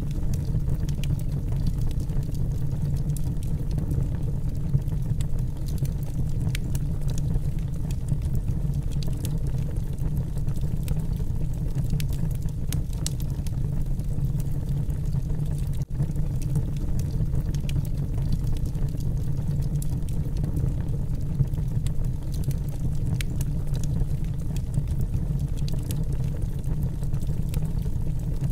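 Fire burning close by: a steady low rumble with scattered sharp crackles, with a brief cut about sixteen seconds in.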